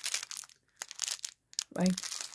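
Small clear plastic bags of beads crinkling as they are handled, in short irregular crackles.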